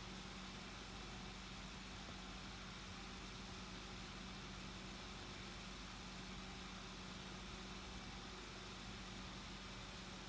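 Faint, steady room noise: an even hiss with a low, steady hum running under it, and no other sounds.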